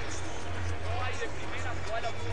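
Basketball arena background during a timeout: faint voices and music from the hall over a steady low hum.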